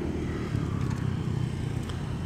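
Steady low rumble of motor traffic, with a motorcycle or similar engine running nearby.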